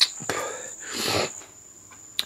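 A man breathing hard through his mouth: a sharp click, then two noisy breaths, the second longer, as he rides out the burn of a freshly eaten Trinidad Scorpion pepper.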